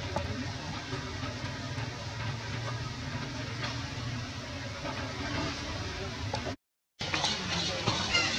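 Steady outdoor background noise, an even hiss over a low rumble, with no clear animal calls. It cuts out to silence for about half a second near the end.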